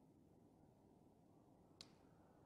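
Near silence: room tone, with one faint short click near the end.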